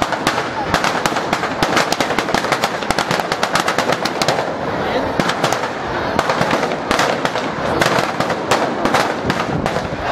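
Firecrackers going off inside a burning New Year's effigy: a dense, irregular string of sharp cracks and bangs, several a second and never letting up.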